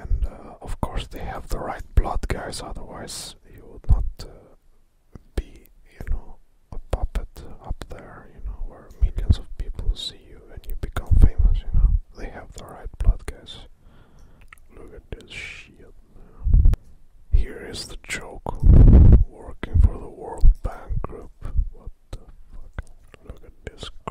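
A person whispering in irregular bursts, with short pauses between phrases.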